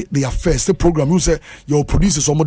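Continuous speech: one voice talking without a pause.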